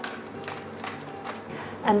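A hand pepper mill grinding black pepper, quiet and steady.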